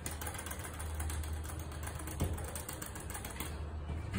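Steady low hum inside an elevator car, with faint rapid ticking over it and one sharp click a little over two seconds in.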